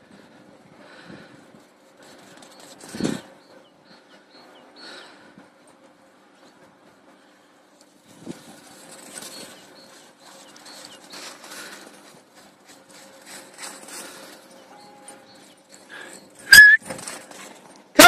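Mostly faint scattered rustling, with a short dull sound about three seconds in, then one sharp, loud, high-pitched bark from a dog near the end.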